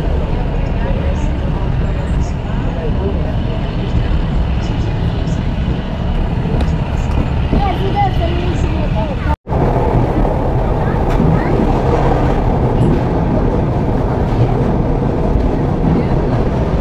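Cabin noise of a diesel-hauled Belgrano Norte commuter train running along the track: a loud, steady rumble of wheels and running gear. The sound drops out for an instant just after nine seconds in.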